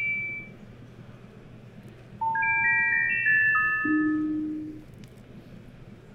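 Synthesized bell-like chime tones from a touch-sensing plant demo: a few tones fading out at first, then, about two seconds in, a quick cascade of about seven notes at different pitches, each held briefly and fading, with one lower note joining near the end.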